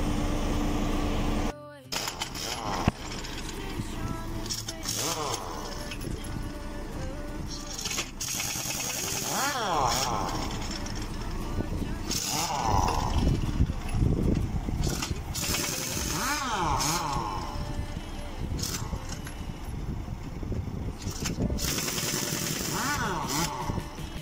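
Pneumatic impact wrench on a truck's wheel nuts, running in repeated bursts about a second long with pauses between them. Background music with singing plays throughout.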